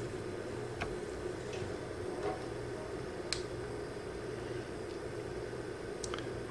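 A few faint, short clicks from a digital multimeter and its test probes being handled, over a steady low hum of room tone; the sharpest click comes a little past halfway.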